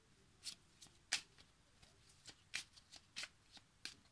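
A deck of oracle cards being shuffled by hand: a handful of faint, irregular card flicks, the sharpest a little after one second.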